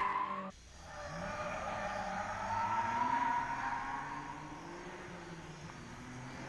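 A car driven hard in the distance: its engine note and tyre squeal swell to a peak about three seconds in and then fade away. The louder sound before it cuts off suddenly half a second in.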